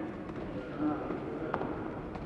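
Taekwondo sparring exchange: voices and shouts, with one sharp smack about one and a half seconds in as the fighters trade kicks at close range.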